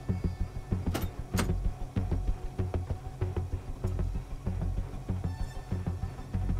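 Tense film score with a low pulsing beat. About a second in come two sharp clicks close together, the latch of a car door being opened.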